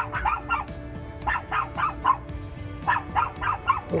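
Dogs barking in short runs of several quick barks with pauses between, over steady background music. It is territorial barking: the dogs bark at everything around them.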